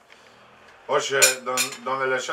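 Cutlery and plates clinking at a laid table, with men's voices starting about a second in.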